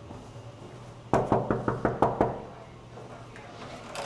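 A quick run of about eight knocks on a wooden hotel-room door, about a second in, followed near the end by a faint click as the door is opened.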